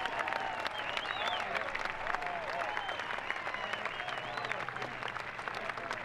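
Golf gallery applauding a holed par putt: steady clapping from a crowd, with faint voices among it.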